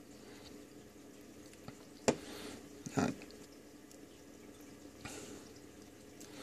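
Two small clicks about a second apart, as multimeter test probes and clip leads are handled against a voltage-reference circuit board's terminals, over a faint steady hum.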